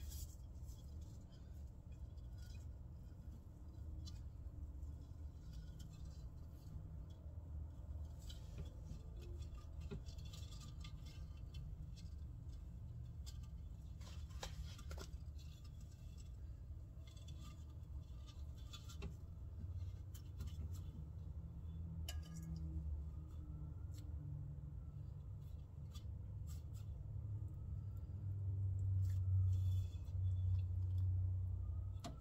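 Faint scattered scratches and clicks from a monitor lizard being handled and lifted out of its enclosure, claws and tongs against wood and glass, over a low steady hum that swells near the end.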